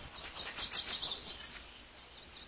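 Faint birds chirping: a quick series of short, high calls over the first second and a half, then only quiet outdoor background.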